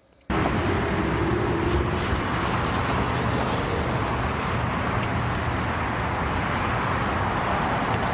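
Steady roadway traffic noise from cars passing on a multi-lane road, cutting in abruptly a moment in.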